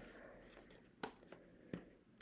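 Near silence with a few faint, light clicks about a second in and near the end: an iPad being handled and pressed into a snug plastic keyboard case.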